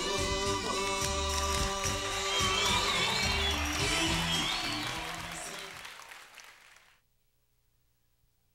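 Instrumental music of a Taiwanese Hokkien pop song played over a sound system, fading out and dropping to near silence about seven seconds in.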